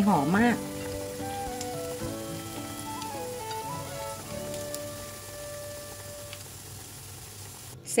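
Tuna fish cakes deep-frying in a pan of hot oil, sizzling steadily, with soft background music. A brief word of speech opens it.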